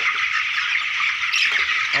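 A large flock of young broiler chickens peeping all at once, a loud, steady, dense chorus of high chirps with no single call standing out.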